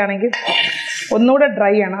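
A woman's voice speaking, broken about half a second in by a short scrape of a metal spatula against an aluminium pan as coconut-coated vegetables are mixed.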